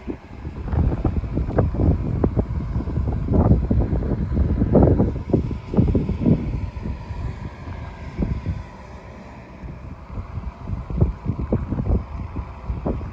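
Wind buffeting the microphone in irregular low rumbling gusts, strongest through the first half and easing off after about eight seconds.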